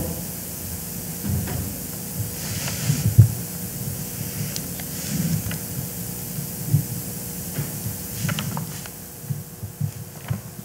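Handling noises of a Torah scroll on a wooden reading table: irregular soft knocks and thuds as the wooden rollers are moved, with a few sharper clicks and brief rustles of the parchment, close to a microphone.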